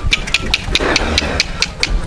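A quick run of sharp metallic knocks and rattles, about five a second, with a brief scuffing noise in the middle. The sound comes from the cattle truck's body and floor as a bull is hauled toward the unloading ramp.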